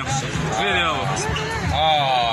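Basketball bouncing on the court during play, with voices talking loudly over it.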